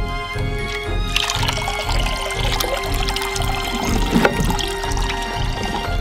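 Background music with a steady beat, over water running from a hose into a concrete laundry sink. The splashing starts about a second in and briefly grows stronger near the four-second mark.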